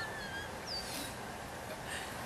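Faint bird calls: a few short wavering chirps, then a single falling whistle about a second in, over a steady outdoor background hiss.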